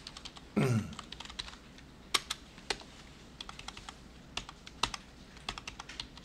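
Typing on a computer keyboard: irregular keystrokes, with a few clicks standing out louder than the rest. About half a second in, a short vocal sound falls in pitch.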